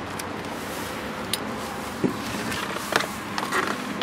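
A steady background hiss with a few light clicks and knocks from handling inside a car's cabin: one about a second in, then more around two, three and three and a half seconds.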